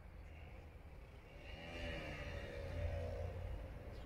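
A motor vehicle's engine speeding up as it passes, rising in pitch from about a second and a half in and loudest about three seconds in, over a steady low rumble.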